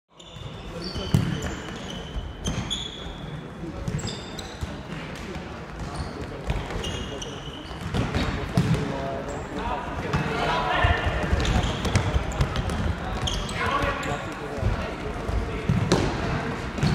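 Futsal being played in a sports hall: the ball struck and bouncing on the court in sharp thuds, short high squeaks, and voices calling out, getting busier in the second half.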